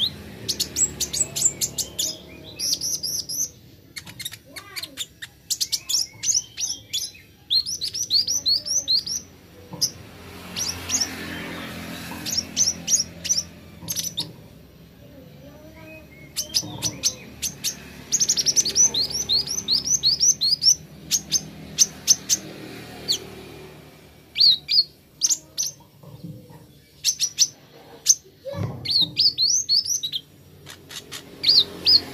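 Van Hasselt's sunbird (kolibri ninja) singing: quick runs of high, thin chirps and sweeping notes in repeated bursts, with short pauses between them.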